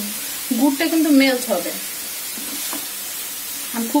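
Grated coconut and jaggery sizzling with a steady hiss in a non-stick pan while a wooden spatula scrapes and stirs it, the mixture cooking down for coconut sweets. A voice speaks briefly during the first two seconds, and there is a single sharp click around the three-quarter mark.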